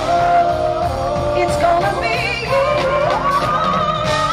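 Live R&B band playing with a woman singing wordless held notes with vibrato over it, her line sliding upward about two and a half seconds in.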